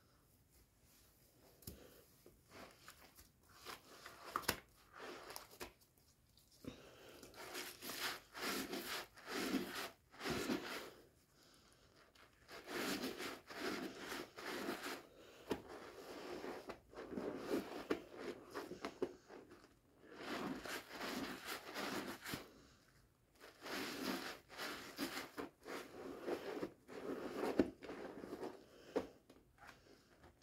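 Wet, foamy squishing and crackling of a green scouring sponge being kneaded and squeezed by hand through soaked, mushy soap and lather, in repeated bursts with short pauses.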